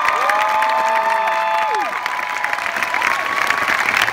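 Large audience applauding and cheering, with long drawn-out whoops that hold and then fall off above the steady clapping.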